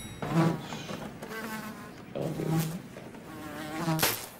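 A housefly buzzing, its drone wavering in pitch and swelling and fading as it flies about. A sudden loud hit comes at the very end.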